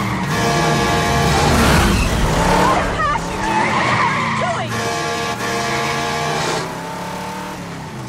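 An old truck's horn blaring in two long, held blasts, each about two seconds, over engine rumble.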